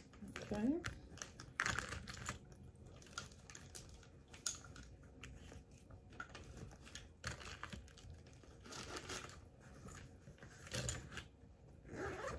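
Rustling and crinkling of small cosmetic items and their packaging being handled and packed into a small fabric pouch, with scattered light clicks and taps at irregular moments.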